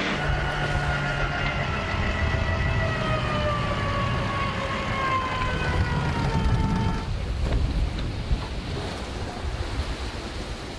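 Wind and water rushing past a sailing yacht under way downwind. Over it, a whine of several pitches slowly falls for about seven seconds and then stops abruptly.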